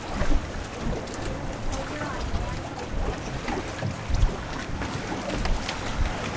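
Wind buffeting the microphone in irregular gusts over a steady outdoor hiss.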